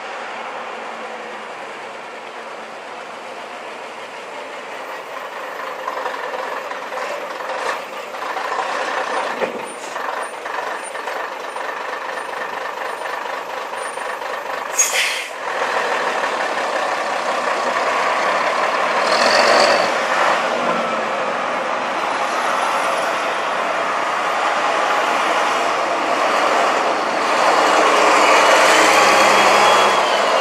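Vintage double-decker buses' diesel engines running as they drive past close by, growing louder in the second half, with the engine note rising and falling as they accelerate. A short sharp hiss of air sounds about halfway through.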